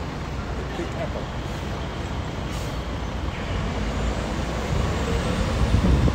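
Street traffic and a bus engine running, heard from the open deck of a moving sightseeing bus, getting a little louder toward the end.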